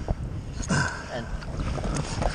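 Sea water sloshing against the hull of a small inflatable rescue boat, with wind buffeting the microphone and a couple of sharp knocks.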